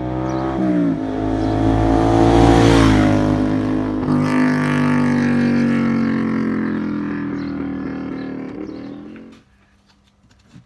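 Vehicle engine revving: its pitch climbs over the first few seconds and drops sharply about three seconds in, then picks up again and falls slowly and steadily until the sound cuts off near the end.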